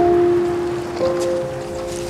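Slow, soft piano score: a few held notes ringing on, with a new note entering about a second in.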